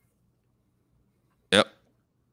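Near silence, then a man's short spoken "yep" about one and a half seconds in.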